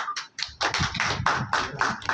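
A small group clapping hands in a quick, even rhythm of about five claps a second, with a brief pause about half a second in.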